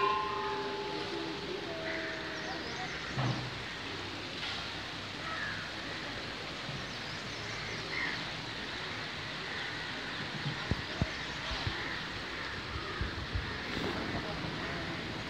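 Steady outdoor background noise with faint scattered chirps. A brief ringing tone lasts about a second at the very start, and a few light knocks come near the end.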